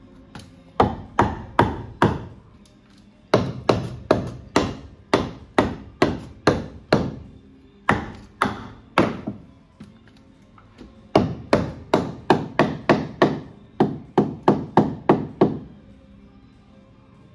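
Hammer driving nails into a wooden door header, struck in four runs of sharp blows, about two to three a second, with short pauses between runs, the longest pause around ten seconds in.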